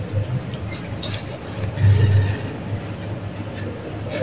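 Elevator car travelling between floors: a steady low hum from the ride, swelling briefly about two seconds in.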